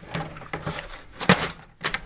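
Hand shifting a tray of Biohome Ultimate filter media pellets in a plastic canister-filter tray: loose rattling and clicking of the hard pellets, with a couple of sharper clacks in the second half.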